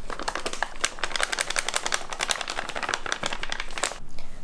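A flour bag crinkling as it is tipped and shaken to pour flour into a plastic bowl, a dense run of small crackles that stops just before the end.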